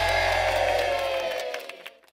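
The final held chord of an upbeat children's pirate sing-along, one long sustained note sliding gently down in pitch over a bass tone, fading out in the last half second.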